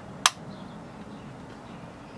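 A single sharp click about a quarter of a second in: a ring light's switch being pressed to turn the light back on.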